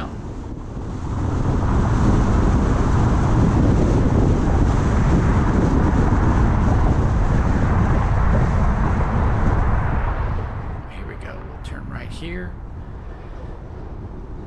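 Road and wind noise of a car driving at speed, a steady rushing rumble that builds about a second in and eases off near the end as the car slows.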